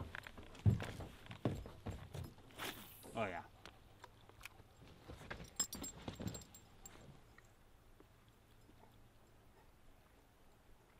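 Faint scattered clicks and knocks from a spinning rod and reel being handled and cast, with a short murmured voice about three seconds in. The clicks stop after about six and a half seconds, leaving a faint steady hiss.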